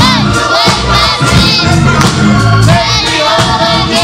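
Gospel praise team of several voices singing together over instrumental backing, with held, wavering notes above steady low bass notes.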